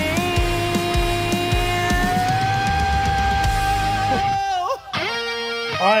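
Rock band music with electric guitar: one long held note rings over the drums for about four seconds, bends and breaks off, and after a short break a sustained chord starts.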